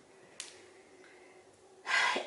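Quiet room tone with one short click about half a second in, then a breath drawn in near the end.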